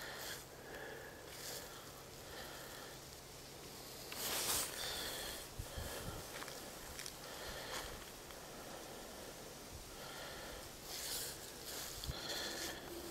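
Faint outdoor night ambience with a low steady hum, a short rush of noise about four seconds in and another near the end, and a few faint high chirps.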